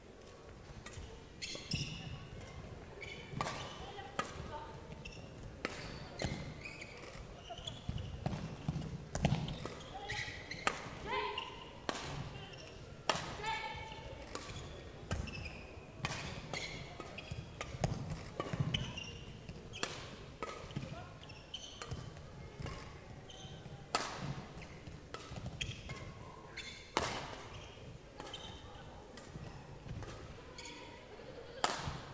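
Badminton rackets striking the shuttlecock again and again through a long women's doubles rally, one sharp hit about every second, in a large reverberant sports hall.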